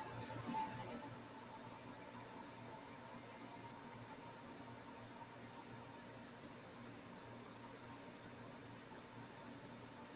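Near-silent room tone: a faint, steady hum and hiss.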